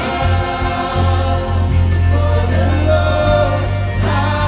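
Live contemporary worship music: a woman singing lead into a microphone with a choir, over strummed acoustic guitars and a sustained low bass.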